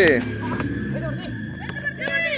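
A man's voice breaks off, then faint shouting from players on an outdoor court over a steady high-pitched hum.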